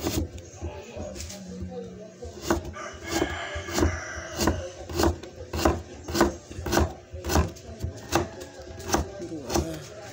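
Kitchen knife slicing a carrot on a cutting board, each cut knocking the board, about two a second. A rooster crows in the background about three seconds in.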